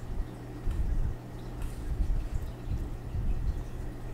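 Handling noise from drawing with a Sharpie marker on card stock: low bumps and rumbles of the hand and paper on the desk, a few faint short scratches of the marker tip, over a steady low hum.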